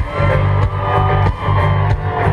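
A live rock band playing loud amplified music through a stadium sound system, heard from within the crowd: heavy bass under a steady drum beat and sustained instrumental lines, with no singing.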